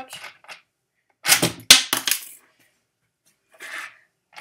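A shaken plastic soda bottle's cap blown off by a fast hand swipe. There is a short rush, then one sharp, loud pop about a second and a half in, dying away quickly.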